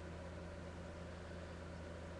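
Steady low hum with an even hiss, the background noise of the recording, with no distinct event in it.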